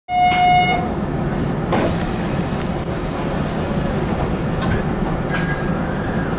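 A brief pitched toot at the very start, then the steady low rumble of a Hanshin 5550 series electric train car running slowly on the rails, heard from the driving cab, with a few faint clicks.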